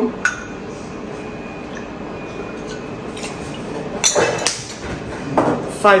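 Stainless-steel bar jigger and shaker tin clinking as a measure of aperitivo is poured and tipped in: a light tap just after the start, then sharper metallic clinks about four seconds in and again near the end.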